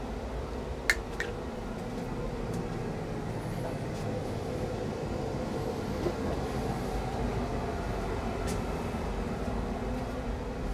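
Steady low rumble with a faint hum and a few light clicks: the handling noise of a handheld camera rig carried while walking.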